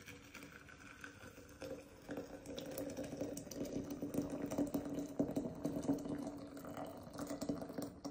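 Hot water poured from an electric kettle into a glass teapot over loose dried herbs, a steady stream that starts softly and grows louder about two seconds in.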